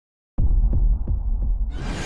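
Intro sound effect: a deep low drone with four thudding pulses about a third of a second apart, starting a moment in, then a rising whoosh of noise near the end.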